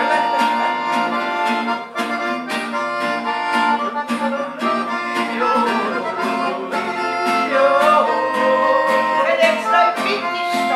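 Piano accordion and steel-string acoustic guitar playing a lively tune live, the guitar strummed in an even beat under held accordion chords and melody. A man's voice sings over them, most clearly in the second half.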